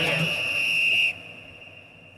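A single steady high whistle tone, held for about a second and then cut off, followed by a lull in the music.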